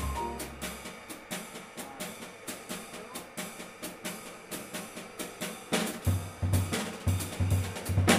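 Jazz drum kit playing a solo break in a live quartet performance: quick, busy snare strokes and cymbal hits after the piano and bass drop out about a second in. From about six seconds in come heavier low hits and louder accents leading back into the band.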